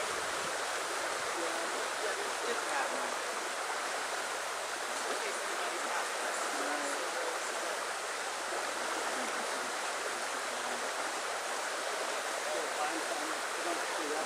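Steady rushing noise of the kind made by flowing water, even and unchanging throughout.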